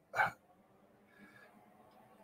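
One short throat noise from a man, about a quarter of a second in.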